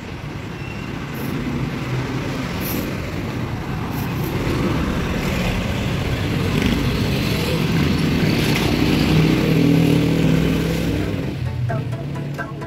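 Street traffic: motorcycle and car engines passing close by. The sound builds to its loudest about nine to ten seconds in, then eases off.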